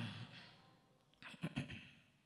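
The last recited phrase fades into the hall's echo, then about a second and a half in a man draws a short, sharp breath close to the microphone: the reciter breathing in between verses of Qur'an recitation.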